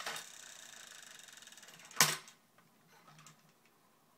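A small plastic toy car's gear mechanism whirring with a fast, even ticking for about two seconds. It ends in one sharp, loud knock.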